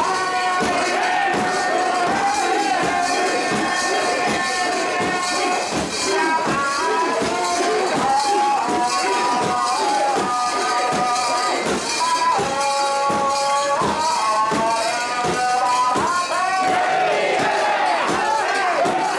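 A crowd of mikoshi bearers chanting and singing long, drawn-out festival calls in unison. Under the voices, the portable shrine's metal fittings jingle in a steady beat as it is carried.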